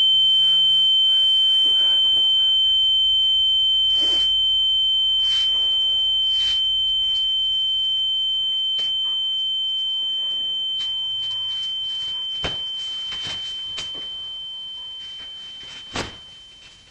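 A steady, high-pitched electronic ringing tone, held on one pitch and slowly fading, with a fainter lower tone under it that drops out near the end. A few faint soft knocks sound under the tone.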